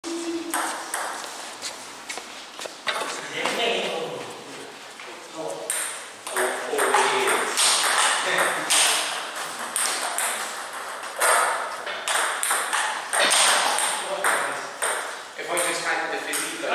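Table tennis ball clicking off bats and the table in a rally, repeated sharp taps in a large hall, with voices in the background.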